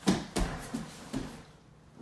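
Two grapplers in gis moving on a foam mat as one sits up and bumps the other forward: two sharp thumps in the first half second, the partner's hand posting on the mat, then a few softer thumps and cloth rustles.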